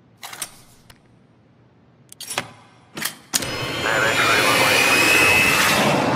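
A few sharp plastic clicks and snaps from a small model car being worked in the hands. From about three seconds in comes a loud, sustained rushing sound, the loudest thing here.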